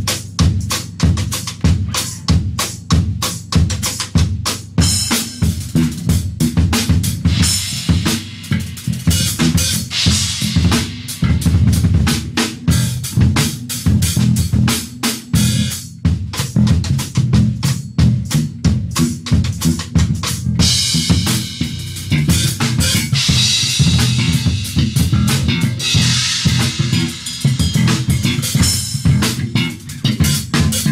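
A ddrum drum kit played in a busy groove, with fast snare and bass-drum strokes and cymbals washing over in stretches, while an electric bass plays along underneath.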